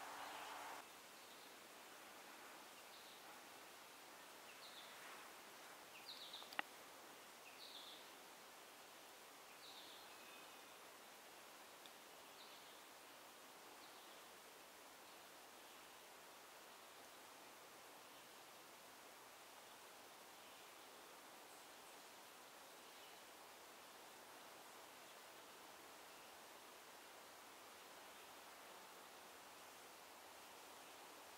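Very faint, thin high-pitched bird calls, short notes about once a second through the first dozen seconds, then only a low forest hiss. One soft tick comes about six seconds in.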